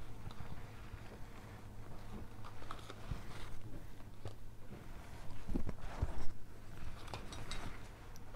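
Small handling noises of gloved hands setting down a cup of paint and picking up a plastic spreader, with a few louder knocks about six seconds in, over a steady low hum.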